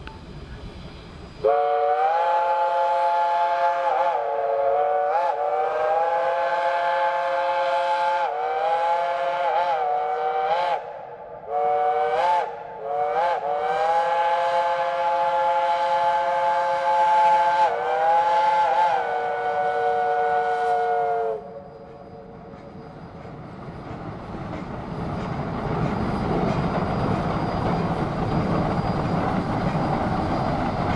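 Shay geared steam locomotive's chime whistle blowing, several notes at once, in long blasts with a few brief breaks and pitch dips, for about twenty seconds. When the whistle stops, the locomotive's working noise grows steadily louder as it draws near.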